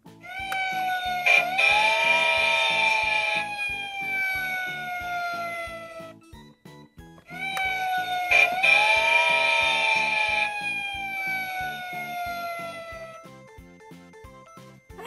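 Mickey Mouse toy fire engine's electronic siren sound, played twice: each time a wailing tone rises briefly and then slides slowly down over about six seconds, with a rushing noise in its first two seconds. Background music plays under it.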